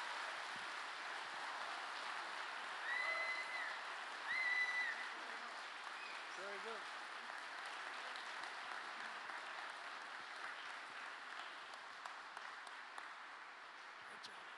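Audience applauding a speaker being welcomed on stage, with two short high-pitched cheers about three and four and a half seconds in. The applause slowly dies down toward the end.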